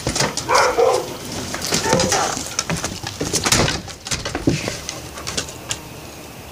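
Footsteps and a dog's claws on a wooden deck, with the knocks and clicks of a storm door swinging shut, while a bird calls in the background.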